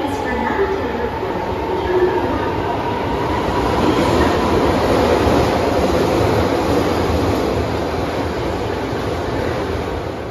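Electric commuter trains running through an underground station: a steady rumble of wheels on rail that swells to its loudest about four to six seconds in as a striped commuter train pulls in alongside the platform.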